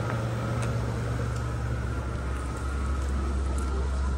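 Engine of a Ford stretch SUV limousine idling at the curb, a steady low hum that shifts to a lower note about two-thirds of the way through.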